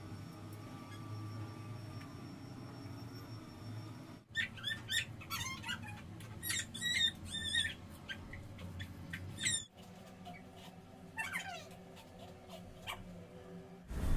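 Faint, high-pitched chirping and squeaking calls from a small animal or bird, a quick scatter of short up-and-down chirps for about five seconds from about 4 s in, then a single falling call near 11 s, over a low steady hum.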